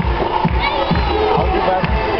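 Music with a steady beat playing loudly while a crowd of spectators cheers and children shout.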